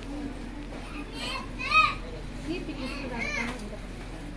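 A child's high-pitched voice calling out twice, the first call the louder, over a steady low background hum.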